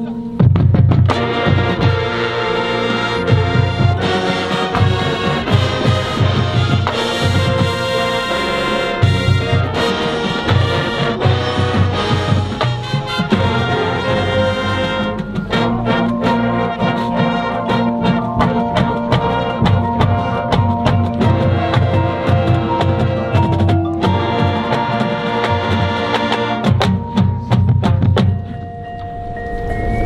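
High school marching band playing: brass and percussion together, with drum strokes and front-ensemble mallet percussion under the horns. It drops quieter about a second and a half before the end.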